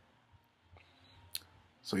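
Quiet room pause with one short, sharp click about a second and a half in, followed by a man's voice starting again right at the end.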